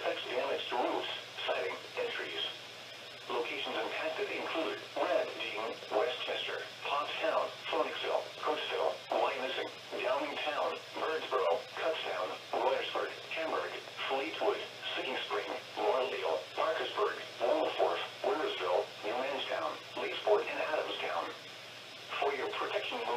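Automated NOAA Weather Radio voice reading a severe thunderstorm warning over a weather radio's small speaker, thin and cut off in the highs, with a short pause about three seconds in and another near the end.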